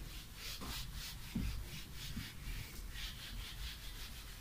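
A whiteboard duster rubbing across a whiteboard in quick back-and-forth strokes, erasing it, with a soft bump about one and a half seconds in.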